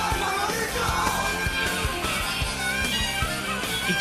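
A rock song playing, with sung vocals over a steady drum beat.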